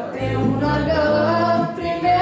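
A young woman singing a Romanian Christian song solo into a handheld microphone, her melody wavering with vibrato over steady held low backing notes.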